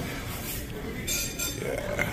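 Light clinks of a metal serving spoon against a ceramic bowl and plate as grated cheese is spooned onto pasta at the table, with a brighter patch of clinking about a second in.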